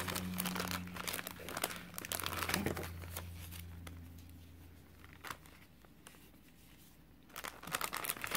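Clear plastic packaging crinkling and rustling as craft ribbons are handled, in irregular bursts. It dies down around the middle and picks up again just before the end.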